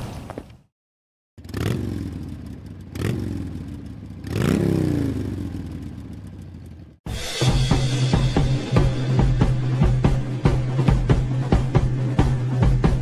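After a moment of silence, three sudden hits, each falling in pitch as it fades. Then, from about seven seconds in, music with a drum beat over a held bass note.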